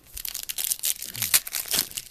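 Foil trading-card pack wrapper crinkling and tearing as it is ripped open by hand: a dense run of sharp crackles, the loudest about a second and a third in.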